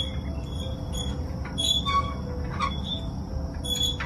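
Metal playground swings and outdoor exercise machines squeaking at their pivots as they move, short high squeals at irregular intervals over a steady low rumble.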